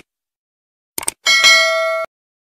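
Subscribe-button sound effect: a short mouse click about a second in, then a bright bell ding that rings on evenly and cuts off suddenly.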